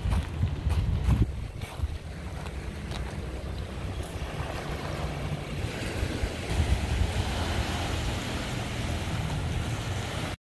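Wind buffeting the microphone with a steady low rumble. In the first two seconds there are crunching footsteps on coarse sand and shell grit. From about four seconds in, surf washes over the rocky shore as a steady hiss.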